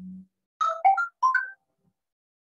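Mobile phone ringtone: a quick melody of about five notes, lasting about a second, after a brief low hum.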